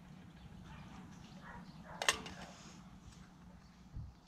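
Quiet outdoor background with one sharp clink about halfway through: a camping cooking pot knocking against a metal plate as the cooked shoots are tipped out.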